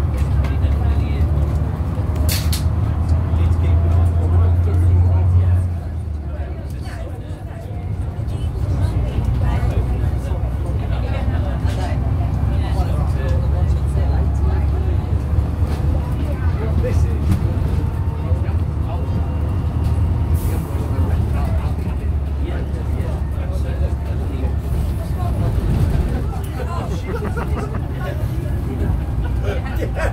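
Eastern Coach Works Bristol VR double-decker bus's diesel engine pulling the bus along, heard from inside the passenger saloon as a loud steady low drone. The drone is strongest for the first six seconds or so, drops off, then builds again and holds.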